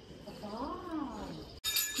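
A hanging brass temple bell struck near the end, ringing with high metallic tones. Before it, a faint drawn-out call rises and then falls in pitch.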